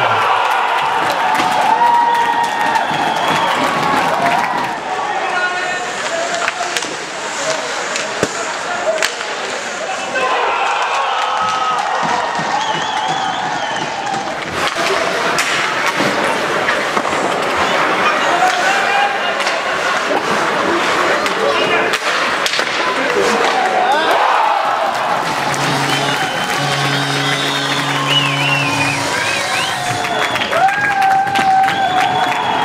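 Live ice hockey play in a small indoor rink: sticks and puck clacking, bodies and puck thudding into the boards, and players and spectators shouting. Near the end a steady low tone sounds twice.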